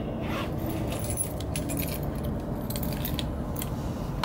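Small hard objects clinking and rattling as they are handled, a run of short, sharp jingles and clicks over a steady low rumble.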